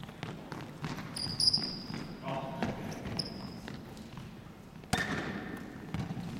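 Sneakers squeaking and feet running on a wooden sports-hall floor, echoing in the big hall, with a single sharp thump about five seconds in.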